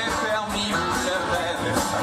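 Live band playing a folk-rock song, with strummed acoustic guitar and drums.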